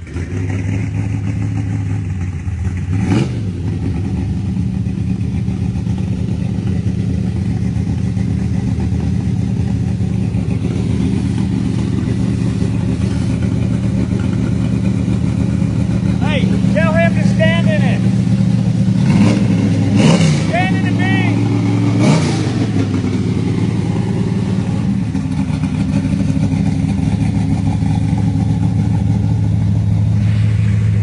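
Carbureted big-block Chevy V8 idling steadily, with short throttle blips about three seconds in and twice more past the twenty-second mark. A warbling high-pitched sound comes in twice in the middle.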